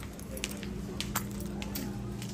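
Shop background: a steady low hum with a few scattered light clicks and knocks.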